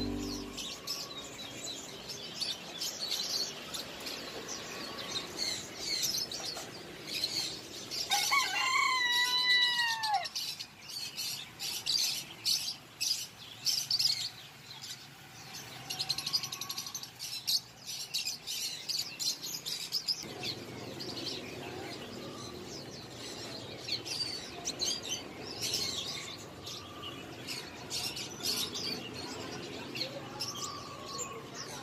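Many small caged birds chirping and twittering in a dense, continuous chorus, with one louder call of several falling whistled notes about eight seconds in.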